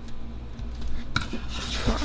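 Small scissors snip once, sharply, about a second in, trimming a paper sticker at the edge of a planner page. Paper then rustles near the end as the page is lifted, over a steady low hum.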